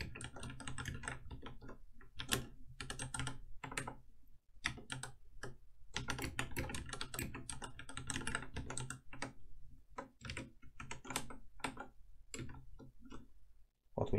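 Typing on a computer keyboard: quick runs of keystrokes broken by short pauses.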